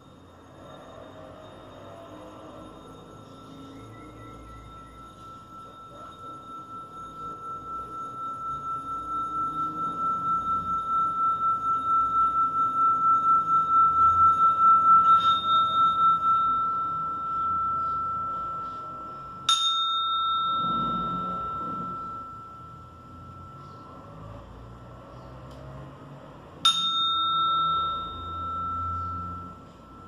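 Small hand-held singing bowl rubbed around its rim with a mallet: one steady ringing tone that swells with a pulsing wobble to a peak about halfway, then fades. The bowl is then struck twice, about seven seconds apart, each strike ringing on and slowly dying away.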